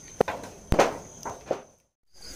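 Footsteps, about three, over a steady high-pitched insect buzz. The sound cuts out completely shortly before the end.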